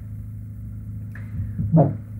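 A steady low hum of background noise in a pause between a man's words; he starts speaking again with a single word near the end.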